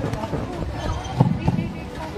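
Indistinct voices with two dull thumps a little after halfway.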